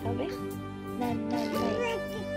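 A children's song with a steady beat playing in the background, while a toddler makes high gliding vocal sounds twice, briefly near the start and again for most of the second half.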